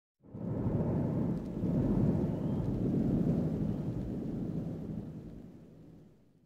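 Deep, noisy rumble of a cinematic logo-intro sound effect. It starts suddenly just after the start and fades away over the last two seconds.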